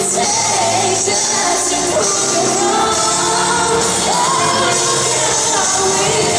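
Live pop ballad: a woman singing into a microphone over a full band, holding long notes that glide up and down, including a rising held note about four seconds in, as heard from among the audience.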